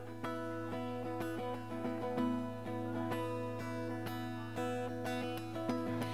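Acoustic guitar playing a song's opening, notes plucked about twice a second and left ringing into each other.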